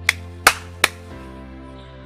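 Three sharp hand claps, each about a third of a second apart, over steady background music whose chord changes about a second in.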